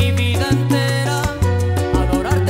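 Salsa music: an instrumental passage with a strong bass line moving in short held notes under pitched instrument lines, with no singing.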